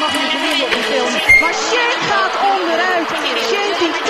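A voice talking over steady crowd noise, with one brief sharp knock just over a second in.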